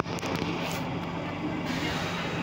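Inside a Stockholm C6 metro car standing at a platform: a steady electrical hum from the car, with a sharp knock right at the start and passengers' voices behind it.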